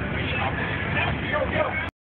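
Steady low vehicle rumble on a street, with bystanders' voices over it. The sound cuts off abruptly just before the end.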